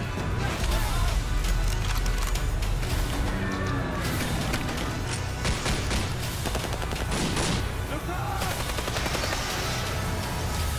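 Volleys of rapid gunfire from a film soundtrack, many sharp shots in quick succession, over a driving music score with a heavy, steady low bass.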